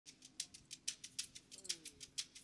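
Shekere, a gourd rattle netted with beads, shaken on its own in a quick, even rhythm of crisp rattling strokes, about six or seven a second.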